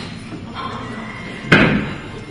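A single loud slam-like thud about one and a half seconds in, dying away quickly.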